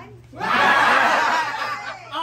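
A group of people laughing loudly together, starting about half a second in and easing off near the end.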